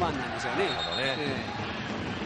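Japanese television football commentary: a man talking over the broadcast's steady background noise.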